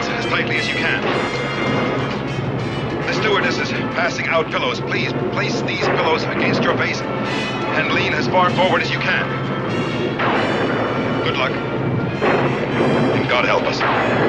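Film soundtrack of an airliner in distress: dramatic music over a steady low drone of the aircraft's engines, with passengers' voices crying out wordlessly.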